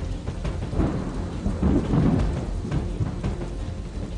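Thunder rumbling over steady rain, swelling to its loudest about two seconds in.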